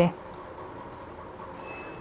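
Quiet room tone with a faint steady hum, after a spoken word ends at the very start.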